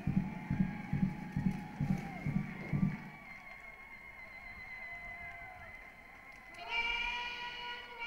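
Military band marching music led by a bass drum beating steady time at a little over two beats a second, stopping about three seconds in. Near the end a long, drawn-out shouted parade-ground word of command.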